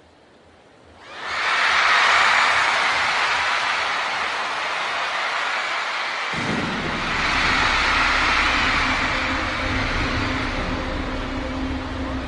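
Large arena crowd screaming and cheering, rising suddenly about a second in and swelling again later. From about halfway through, a deep low drone with a steady hum comes in underneath it.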